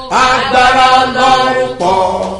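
A man chanting a prayer in a loud, sing-song voice, holding long notes, with a fresh, lower-pitched phrase starting near the end.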